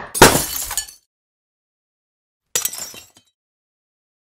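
Logo-sting sound effect of glass breaking: a sharp smash about a quarter second in that rings and fades within a second, then after a silence a second, shorter burst of shattering about two and a half seconds in.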